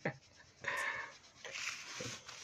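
A young child breathing audibly close to the microphone: two breaths of about half a second each, after a short click at the start.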